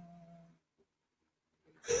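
A man's held, wordless hum fading out within the first half second, then near silence, then a burst of laughter starting just before the end.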